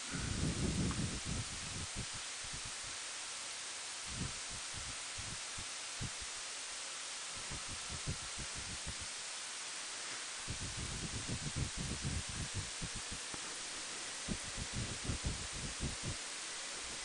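Steady hiss of wind and road noise from a Honda Gold Wing motorcycle riding a dirt road, with irregular low thumps and rumbles that come in bursts at the start and through the second half.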